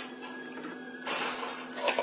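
A metal spoon scooping and scraping cooked ground sausage meat in a nonstick pan: a scratchy, rustling scrape in the second half with a couple of light ticks, over a steady low hum.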